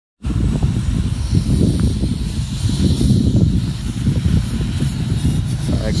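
Heated pressure washer spraying: a steady hiss of the water jet over a low rumble. A man starts talking right at the end.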